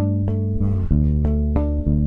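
Cort electric bass played alone: a few plucked, held notes in a slow line, dropping to a lower note about a second in.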